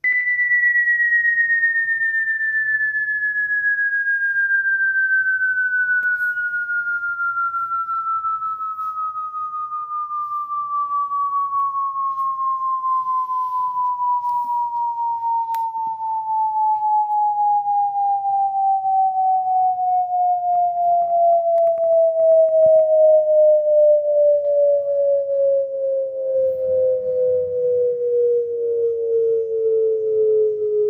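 A pure sine test tone played through a KBOOM portable speaker at full volume, gliding smoothly down in pitch from about 2000 Hz to about 425 Hz as a frequency-response sweep. Its loudness wavers slightly as it goes lower.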